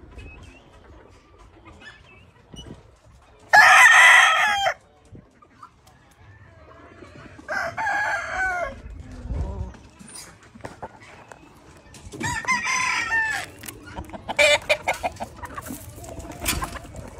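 Claret gamefowl rooster crowing: three short, loud crows about 3.5, 7.5 and 12 seconds in, the first the loudest. A quick run of short calls follows near the end.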